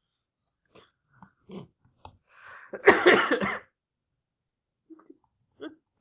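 A man clearing his throat once, a short rough burst about three seconds in, with a few faint mouth clicks before and after it.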